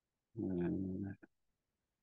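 A man's voice holding a short, steady hesitation sound, a hummed 'mmm' or drawn-out 'uh' of under a second, followed by a couple of faint mouth clicks.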